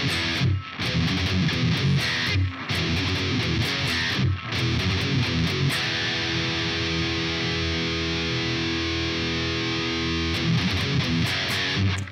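Distorted electric guitar playing a thrash-metal power-chord riff with a few short stops. About six seconds in, a chord is left ringing for several seconds, then a few short final hits end it abruptly.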